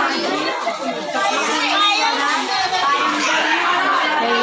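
Many children's voices talking and calling out at once, an unbroken overlapping chatter.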